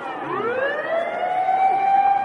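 A siren wailing: its pitch bottoms out at the start, climbs back up over about a second and a half, then holds a steady high tone.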